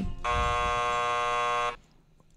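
Game-show buzzer sound effect: one steady, harsh buzz lasting about a second and a half that cuts off sharply.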